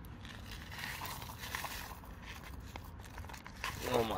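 Plastic instant noodle sachets crinkling and tearing as they are handled and ripped open, a run of crackly rustles throughout.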